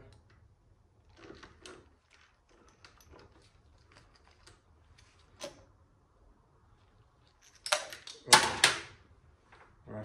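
Faint clicks and handling of metal parts as gloved hands twist the 3-4 accumulator housing on an automatic transmission valve body. Near the end come two loud scraping, rustling bursts as the housing is pulled free of its gasket and spring.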